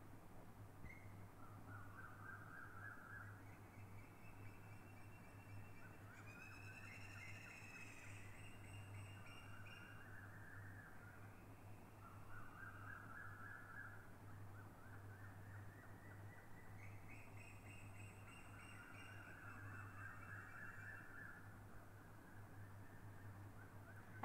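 Near silence: a steady low hum under faint, repeated animal calls, each lasting a second or two, some overlapping.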